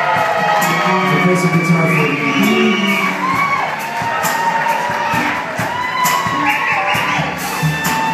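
Live blues band playing, with the crowd cheering and whooping over the music.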